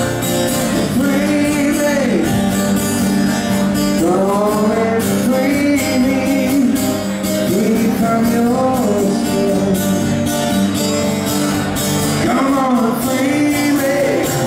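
Acoustic guitar strummed in a steady rhythm while a man sings a melody over it: a solo live song.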